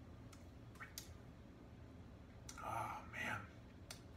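A man savouring a sip of whiskey: faint mouth clicks early on, then two short breathy exhales a little over halfway through.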